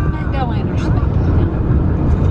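Steady low road and engine rumble inside a moving car's cabin at road speed, with faint voices over it.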